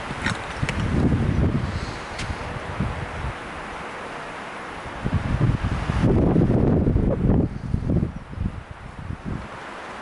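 Footsteps on a wooden plank boardwalk with wind buffeting the microphone, an uneven rumbling that is strongest just past the middle.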